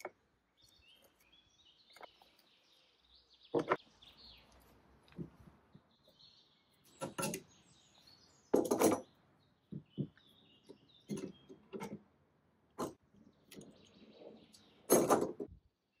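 Irregular wooden knocks, clicks and thuds of hand work on furniture parts: plywood blocks knocked free from a glued table top, then bar clamps being fitted and tightened on table legs. Faint bird chirps sound in the background in the first few seconds.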